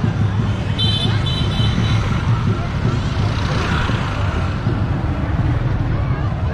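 Busy outdoor street ambience: a steady low rumble under crowd voices, with a brief high tone, broken once, about a second in.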